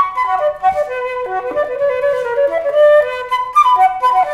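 Solo concert flute played live: a slow melody of held notes that steps downward and climbs back up near the end.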